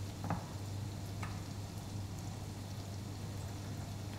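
A sofrito of chopped onion, carrot and celery softly sizzling in olive oil and butter in a frying pan, steady throughout, with two faint ticks in the first second and a half.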